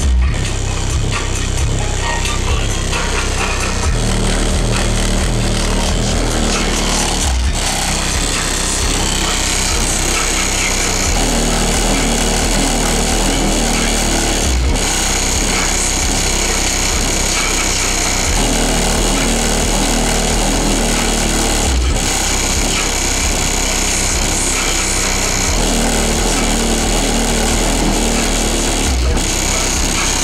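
Bass-heavy music played loud through a van's car-audio system with DC Audio Level 4 XL 15-inch subwoofers, deep bass notes with short breaks about every seven seconds. The bass shakes the Dodge van's doors and panels, which rattle and buzz along with it.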